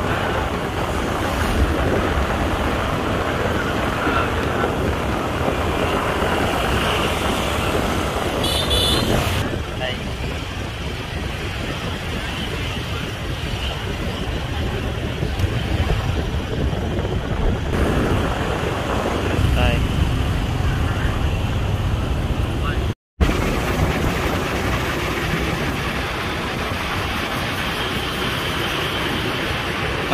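Steady road and traffic noise with wind rush, heard while riding on a moving motorbike through city streets. Other traffic passes, and the sound cuts out briefly about 23 seconds in.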